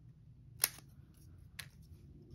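Scissors snipping through a strip of cardstock: one sharp snip a little over half a second in, then a fainter click about a second later.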